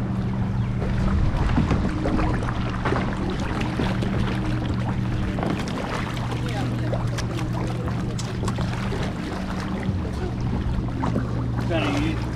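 A steady low engine hum drones throughout, under wind buffeting the microphone and water noise.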